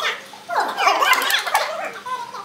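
Several women's voices imitating dogs together, many overlapping high calls that glide up and down in pitch.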